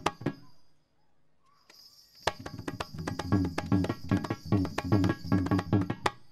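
Balinese gamelan accompanying a Barong Ket dance: a few sharp accented strokes, a brief lull, then about two seconds in a loud, fast, rhythmic passage of struck metallophones, drums and clashing cymbals that stops sharply at the end.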